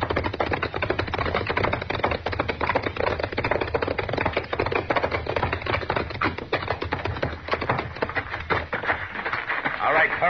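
Radio-drama sound effect of horses galloping: a dense, irregular run of rapid hoofbeats over a low rumble.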